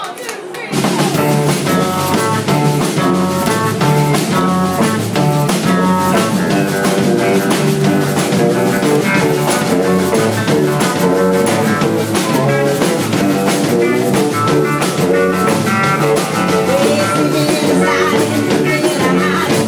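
A live rock 'n' roll band kicks in about a second in and plays on at full volume: drum kit driving a steady beat under electric guitar.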